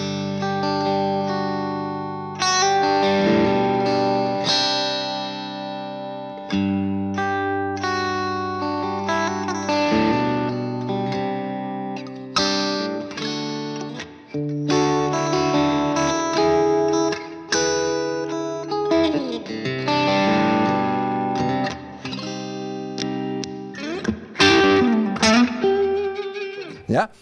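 Ibanez RGA electric guitar played through an amplifier, its humbuckers switched to split-coil for a Strat-like single-coil tone: ringing chords and single-note phrases, with brief breaks between phrases.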